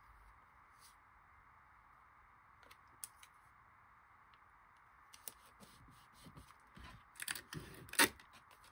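Quiet handling of paper on a desk: soft rustles and a few light clicks over a faint steady hiss, growing busier in the last few seconds. Near the end, sharper clicks and rustling as clear tape is pulled from a desk tape dispenser.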